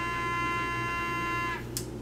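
Small battery-powered defogging fan in a DevTac Ronin clone helmet running with a steady high whine, clearing fogged lenses. It stops about three-quarters of the way through, followed by a single click.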